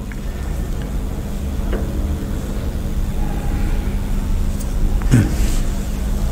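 A steady low rumble with a constant low hum, the background noise of the room and sound system during a pause in speech. A faint click comes a little under two seconds in, and a brief voice sound about five seconds in.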